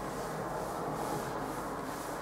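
A cloth wiping over a chalkboard in repeated rubbing strokes, about two a second.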